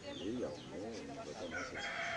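Rooster crowing: one long call that begins about a second and a half in.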